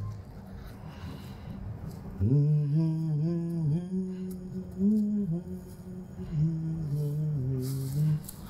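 A man humming a slow, wordless lullaby melody in a low voice, holding long notes that glide from one pitch to the next; the humming starts about two seconds in after a brief pause.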